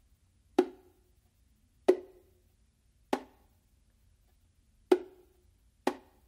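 Slaps on the macho, the smaller drum of a pair of bongos: five sharp strikes, a second or so apart, each with a short ring. It is an exaggerated slap practice, the palm resting on the head and rim while the fingers strike, which gives little projection.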